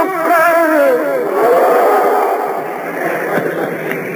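A male Quran reciter's voice ends a melodic phrase with a wavering, falling line about a second in. After that, many voices call out at once, as a listening audience does after a recited passage.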